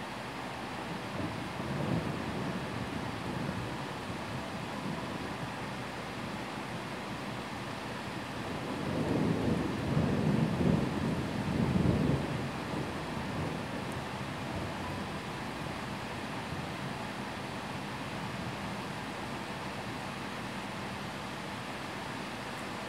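Thunder rolling over steady rain: a low rumble about two seconds in, then a louder, longer roll of about four seconds near the middle.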